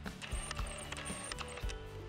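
Autofocus motor of a Nikon 18-105 mm kit lens on a Nikon D3100 whirring in short spurts as it focuses, picked up by the camera's own microphone. It is very noisy and slow to focus. Faint background music runs underneath.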